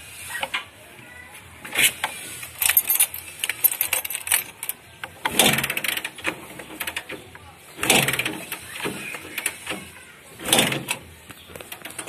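Bajaj CT100's single-cylinder engine being kick-started, several short cranking strokes about every two and a half seconds. The engine turns over but does not fire: a long-stored motorcycle that will not start.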